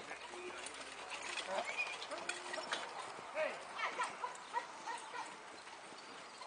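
A pair of ponies trotting a marathon carriage on sand: soft hoofbeats and carriage noise, with voices calling in short bursts over them.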